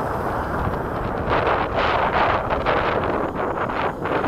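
Strong wind buffeting the microphone: a rushing, rumbling noise that swells in gusts from about a second in.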